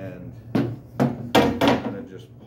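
A long steel sword being laid down on a wooden tabletop: four sharp knocks in quick succession, starting about half a second in, the later ones the loudest.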